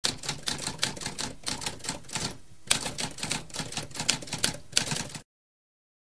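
Typewriter keys typing in a rapid run of sharp clacks. There is a short pause a little over two seconds in, then more typing that stops suddenly about five seconds in.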